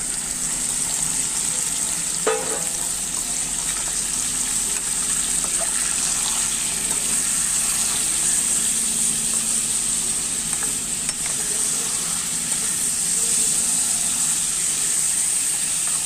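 Chunks of fatty meat frying in an aluminium pan, a steady sizzle as they are stirred with a metal spatula.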